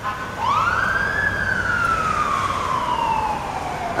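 Siren of a Magen David Adom mobile intensive care ambulance responding: one wail that rises quickly about half a second in, then falls slowly over about three seconds, over a low rumble of traffic.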